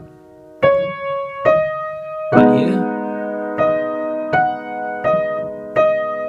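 Yamaha upright piano playing a slow melody in F-sharp major: seven single notes struck one after another, each left to ring. About two seconds in, a fuller left-hand chord joins, and this is the loudest strike.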